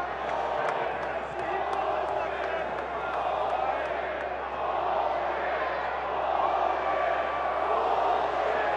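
Ballpark crowd noise: a steady din of many voices calling out at once, with no break. The crowd is very unhappy, displeased with the batter who was just hit by a pitch.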